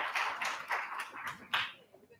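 Audience applause after a talk, dying away and ending a little under two seconds in.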